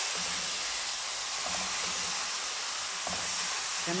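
Hot sugar syrup hitting a pan of semolina toasted golden in butter, hissing steadily as the water flashes into steam against the hot pan.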